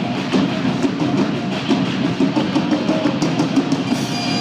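Live Celtic rock band playing loudly, with a driving drum kit beat and electric guitar.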